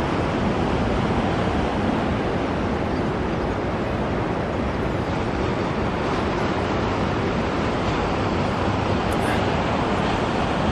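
Steady running of engines, the boat's outboard motors and the idling tractors, blended with a constant hiss of wind and water, without distinct events.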